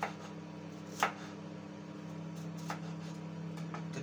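Kitchen knife slicing garlic cloves on a wooden cutting board: a few sharp taps of the blade on the board, the loudest about a second in, over a steady low hum.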